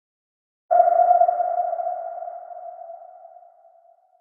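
A single electronic ping used as an intro sound effect: one pitched tone that starts suddenly about two-thirds of a second in and fades away slowly over about three seconds.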